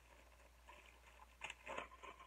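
Faint short snips of scissors cutting into a plastic package, a few quick cuts a little past the middle.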